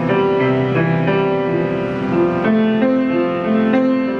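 Grand piano played slowly: a melody over held chords, the notes changing about once or twice a second and ringing into one another.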